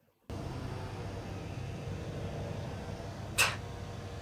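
TV drama soundtrack ambience: a steady low mechanical hum with hiss, cutting in abruptly just after the start, with one brief sharp sound about three and a half seconds in.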